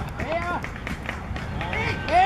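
Voices shouting short calls during open play in a football match: one rising-and-falling shout about half a second in and another near the end, over a steady low rumble.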